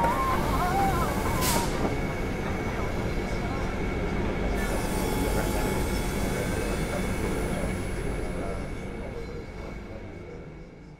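Steady rumbling din of a busy engineering workshop, with machinery running and people's voices, fading out near the end.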